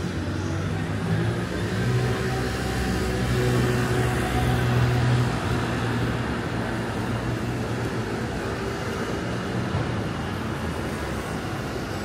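Street traffic noise with a motor vehicle's engine hum nearby, swelling to its loudest about four to five seconds in and then easing off.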